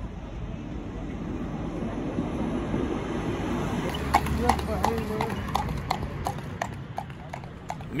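A passing train rumbling at a level crossing, getting louder; about halfway through this gives way to a horse's shod hooves clip-clopping on the road, about three strikes a second, as a horse-drawn carriage goes by.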